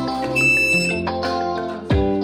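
Background music, with one short, high electronic beep near the start from a lift's key-card reader as the card is tapped on it.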